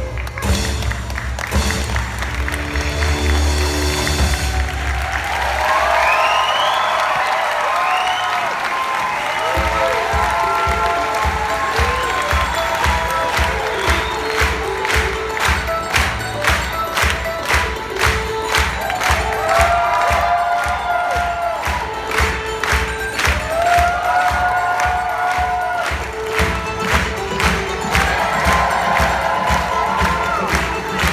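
Loud drum-driven show music ends a few seconds in. Then a theatre audience applauds and claps steadily in time, about two claps a second, under music and cheering voices.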